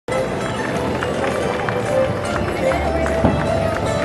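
A folk dance tune played live for Morris dancing, its held melody notes moving in steps, with the dancers' feet stepping on gravel and crowd voices underneath.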